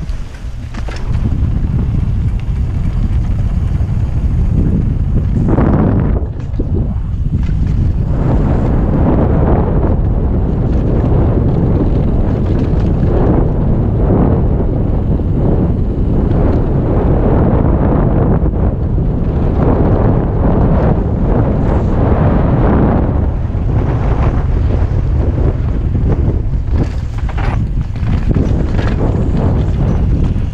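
Loud wind buffeting on a helmet-mounted camera's microphone as a mountain bike descends a dirt trail at speed, mixed with knocks and rattles from the bike over rough ground.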